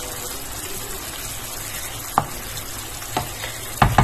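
Fish and vegetables in escabeche sauce sizzling and simmering in a frying pan, with a steady hiss. A wooden spatula taps against the pan three times in the second half.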